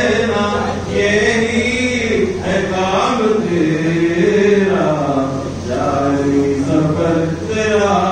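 A man's voice chanting devotional verse in long, slowly wavering phrases, breaking briefly between them.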